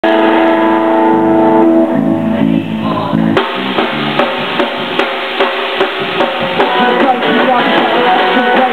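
Live rock band. Sustained held notes ring for about three and a half seconds, then the drum kit comes in hard and the full band plays on with a steady beat of about two hits a second.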